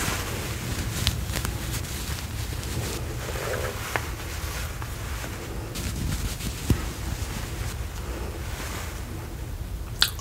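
Makeup kabuki brush bristles swept over the microphone, a steady swishing hiss with a few small clicks.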